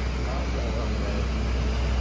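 Steady airport apron noise: a constant low hum under an even hiss of machinery, with no rise or fall.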